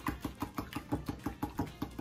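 A wire whisk beating eggs in a bowl, clicking against the bowl in a fast, even rhythm of about eight strokes a second.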